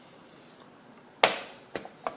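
Two sharp plastic snaps, the louder about a second in and a smaller one just after, as a plastic pry tool works a keyboard retaining clip loose on a Dell Inspiron N5110 laptop.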